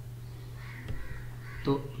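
Steady low electrical hum on the recording, with one faint click about a second in; a man's voice starts near the end.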